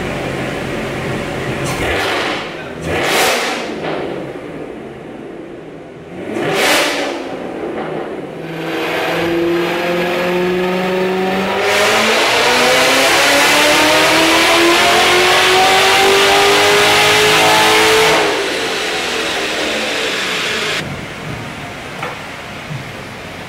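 Supercharged LT4 V8 of a C7 Corvette Z06 with a Corsa exhaust running on a chassis dyno: two quick revs, then a steady run in gear, then a wide-open-throttle power pull of about six seconds with the pitch rising steadily until it cuts off sharply and the engine winds down. This is a dyno run measuring the gains from the new tune and exhaust.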